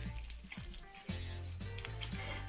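Background music, with faint wet squishing and clicking of a soft, glossy PVA-glue slime being squeezed and kneaded by hand.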